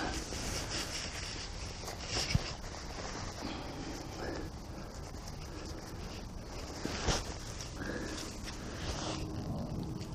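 Door zip of a Quechua Quick Hiker Ultralight 2 tent being undone by hand, with the quiet rustle of the polyester flysheet door being pulled back. A few faint clicks come about two seconds in and again near seven seconds.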